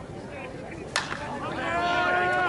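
Slowpitch softball bat hitting the pitched ball once with a sharp crack about a second in, followed by voices shouting.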